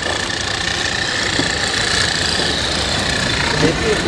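A vehicle engine running steadily at idle under a steady hiss.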